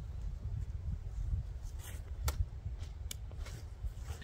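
Low wind rumble on the microphone, with a few sharp snaps as rhubarb leaves are cut from their stalks.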